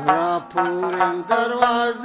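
Male voice singing long held notes of a Pashto folk song, with a brief break about a quarter of the way in. Plucked rabab strokes come in under the voice about halfway through.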